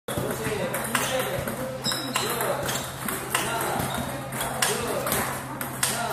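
Table tennis ball rally: a celluloid-type ping-pong ball struck back and forth with rubber-faced bats in a forehand drill, giving an even run of sharp clicks of bat and table bounces.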